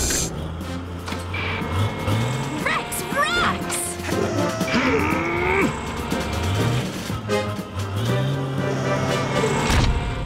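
Cartoon soundtrack: background music mixed with sound effects, including several quick rising whistle-like glides and low, rising grunt-like vocal sounds.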